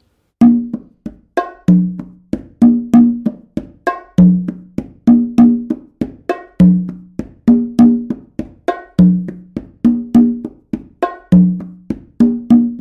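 Hand-played congas and bongo in a repeating samba groove: open tones, light fingertip taps and slaps, with a deep open tone on the tumba coming round about every two and a half seconds. The slap that goes before the tumba's open tone is moved onto the bongo's small macho drum.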